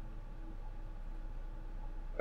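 Room tone between spoken lines: a steady low hum and faint hiss, with no distinct sound.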